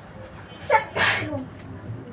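A single sneeze about a second in: a short voiced lead-in that jumps into one sharp, loud burst of breath, trailing off with a falling voice.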